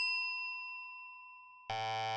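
A bell-like ding, struck in quick succession just before, rings out and slowly fades. About 1.7 s in, a short, steady buzzy electronic tone starts, part of the quiz's transition jingle.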